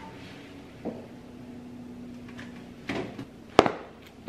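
Kitchen refrigerator door being opened and things being handled, with a faint steady hum through the middle and one sharp knock near the end, the loudest sound.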